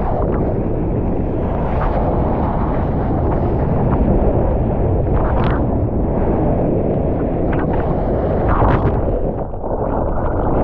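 Rushing water and wind buffeting an action camera riding just above the surface on a surfboard as it runs along a breaking wave, with a couple of sharper splashes. Near the end the sound dulls as the camera goes under the water.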